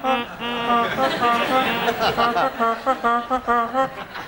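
A man's voice making a run of honking noises, each honk on about the same pitch, the honks coming shorter and faster in the second half.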